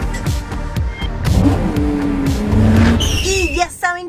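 A short channel logo jingle: music mixed with a car-engine sound effect that surges twice, ending in a brief voice-like flourish.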